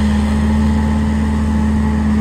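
Tractor engine running under load at a steady pitch, a deep even drone with a constant hum.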